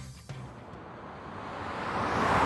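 Background music carried on low bass notes, with a whoosh of noise that swells steadily louder over the second half.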